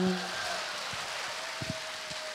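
A man's held sung note ends in the first moment, then audience applause fills the rest.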